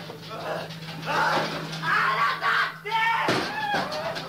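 Unintelligible, voice-like sounds over a steady low hum, with rising pitch glides about three seconds in.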